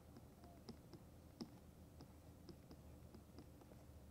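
Faint, irregular ticks of a stylus tapping and dragging on a pen tablet while handwriting, over near-silent room tone.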